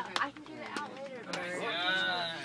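Men talking and laughing. In the second half a high-pitched laugh wavers up and down, with a bleat-like quality.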